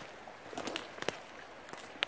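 Footsteps on a forest floor of dry needles and twigs, quiet, with a few short sharp clicks and cracks spread through.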